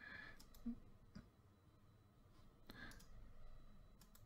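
A few faint computer mouse clicks over near silence.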